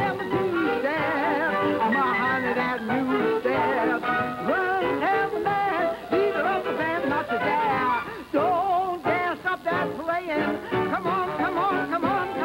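Dixieland jazz band, with clarinet, trombone, trumpet and drums, playing an instrumental chorus, the horns' wavering lines weaving over each other.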